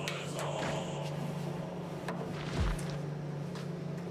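Barracks dormitory room sound: a steady low hum with a few scattered knocks and rustles as soldiers make their beds, and a low thud about two and a half seconds in.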